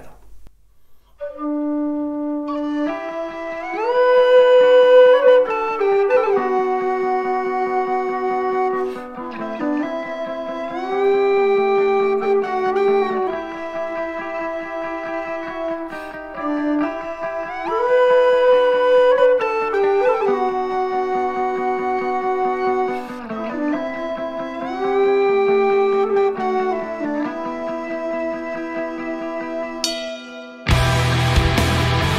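A long metal tin whistle playing a stepwise folk melody along with a backing track that has a steady beat. It begins about a second in with a few single held notes, and the full band texture joins after about three seconds.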